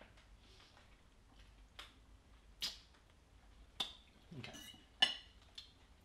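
A few light clinks of metal forks against ceramic plates as diners eat, about one a second, the loudest and most ringing about five seconds in.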